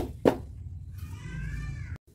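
A cat meowing: one drawn-out call that rises and falls in pitch, starting about a second in. It follows two short, sharp sounds right at the start.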